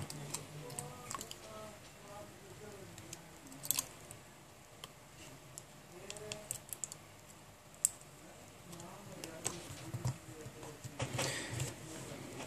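Faint, scattered small clicks and taps as fingers and a thin metal tool press flex-cable connectors onto a smartphone's circuit board. There is a sharper click a little under four seconds in and another at about eight seconds.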